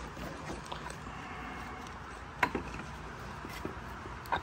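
A quiet garage with a few faint clicks and one sharp metallic click about two and a half seconds in, as metal engine parts are handled.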